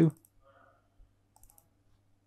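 Faint computer mouse clicks: one near the start and a quick pair about a second and a half in, as a folder is opened, over a faint low steady hum.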